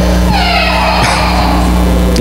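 A high wailing cry, wavering and falling in pitch, lasting about a second and a half, over a steady low hum.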